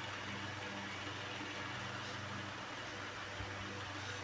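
Steady low hum under a faint even hiss: room background noise with no distinct event.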